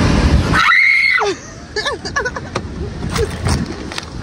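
A girl's short, high-pitched excited scream about a second in, after a loud rushing noise, followed by brief excited voices.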